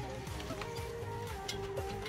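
Background music with a held note over a low, repeating bass line.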